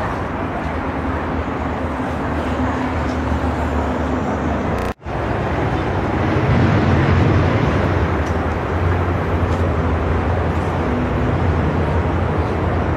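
Red Nissan Note hatchback's engine running as the car pulls away slowly, with steady outdoor traffic noise around it. The sound cuts out completely for a moment about five seconds in.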